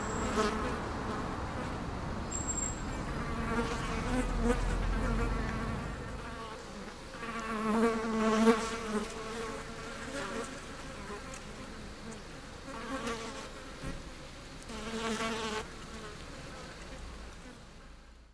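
Flies buzzing in bouts, the pitch wavering as they circle, swelling and easing off several times before fading out at the very end. A low rumble lies underneath in the first few seconds.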